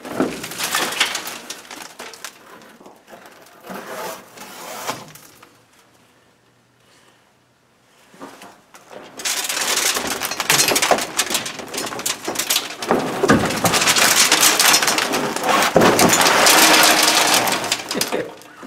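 Crackling and rustling as an old truck-cab headliner panel is pulled down and handled, with dried mouse-nest debris scraping and falling. It comes in two spells, a shorter one at first and a louder, denser one from about nine seconds in, with a near-quiet pause between.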